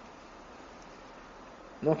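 A pause in a man's speech, filled only by faint, steady background hiss. His voice comes back in just before the end.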